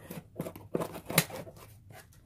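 Scissors slitting the packing tape on a cardboard box: a run of short crackling cuts and taps, the loudest a little over a second in.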